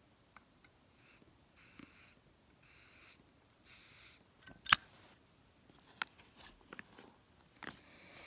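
Tobacco pipe being relit with a lighter: a series of soft puffing draws on the pipe stem, with one sharp click about halfway through and a smaller click a second later.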